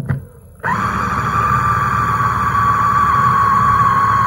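Electric mini food chopper running under hand pressure, starting a little over half a second in with a brief rise to a steady high motor whine. It is a short pulse to mix spring onion into a mashed potato and beef dough rather than grind it fine.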